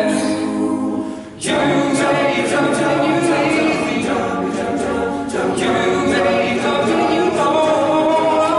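Men's choir singing unaccompanied in chordal harmony. The sound thins briefly about a second in, then the full group comes back in together.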